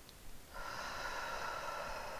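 A person's long audible breath out, a breathy hiss that starts sharply about half a second in and runs on for a couple of seconds.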